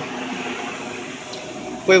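Steady outdoor street noise: an even hum of traffic with no distinct events, until a man's voice comes back at the very end.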